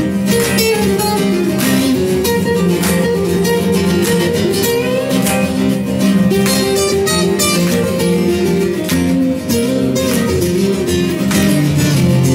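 Acoustic guitars playing an instrumental passage, with chords strummed in a steady rhythm under moving single notes.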